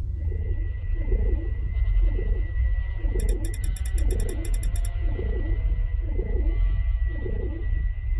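Dark sound-design bed under a title sequence: a deep, steady rumbling drone with a thin, steady high whine over it. A low pulsing sound repeats a little faster than once a second, and a rapid crackle of high clicks runs for about two seconds near the middle.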